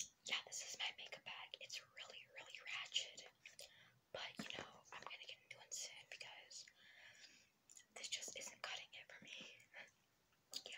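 A girl whispering softly, with short pauses between phrases.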